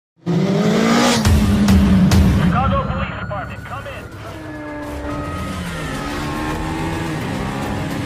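Film car-chase sound effects: vehicle engines revving, with tyres squealing and several sharp hits in the first two seconds.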